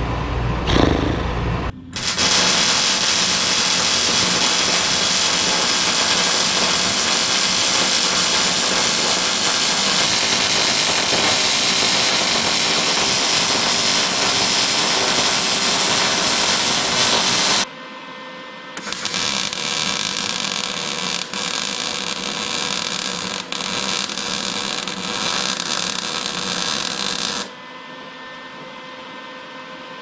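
Electric arc welding on the seams of steel wall sheets: a long, steady hiss from about two seconds in until past halfway, a brief break, then a second bead running until near the end.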